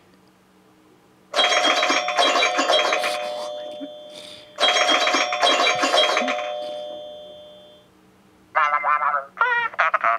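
A loud ringing chime sounds twice, about three seconds apart, each starting suddenly and fading away slowly. Near the end come a few short, wavering whistle-like tones.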